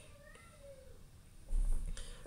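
A cat meowing faintly once, a single rising-then-falling call, followed near the end by a low thump.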